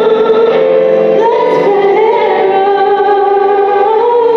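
A woman singing a gospel song into a handheld microphone, holding long notes that slide up and down between pitches.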